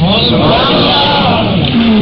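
Speech only: a man's voice continuing a lecture, over a steady low hum.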